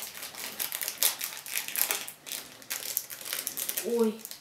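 Thin plastic wrapper of an individually wrapped processed cheese slice crinkling and crackling in quick, irregular little clicks as it is peeled open by hand.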